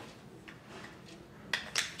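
Faint handling of a plastic fuel tank baffle assembly and its metal stud, with two light clicks about a second and a half in.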